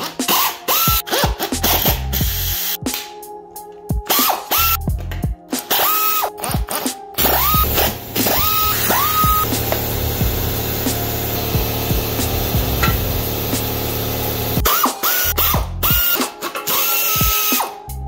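Pneumatic air ratchet running in repeated short bursts. Each burst whines up quickly to a steady pitch and cuts off as it spins bolts out of the engine block's accessories.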